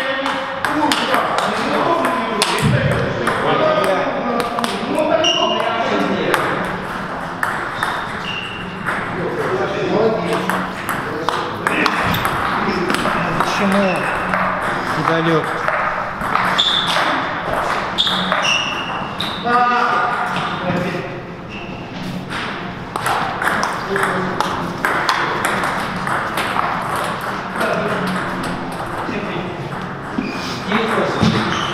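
Table tennis play: the plastic ball clicking off rubber-faced paddles and bouncing on the table in rallies, with breaks between points, over indistinct voices.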